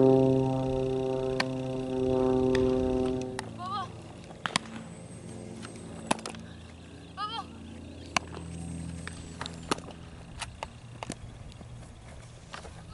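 Sharp single smacks of a softball into a leather glove every second or two, with a bird chirping a few times. A steady low drone fills the first three seconds or so, then stops.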